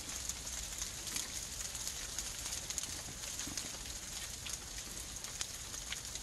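Faint, steady outdoor background hiss with scattered small crackling ticks.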